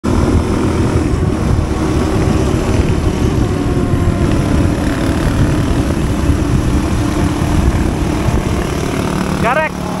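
Dirt motorcycle running under way, its engine partly buried in heavy wind rumble on the microphone. A voice comes in near the end.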